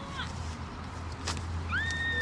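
A short rising chirp, then near the end a longer high-pitched animal-like call that rises, holds and drops away, with a single click in between.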